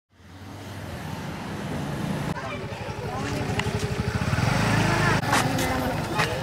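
A motor vehicle engine running steadily close by, fading in at the start, with people's voices talking over it from about halfway in and a couple of sharp clicks near the end.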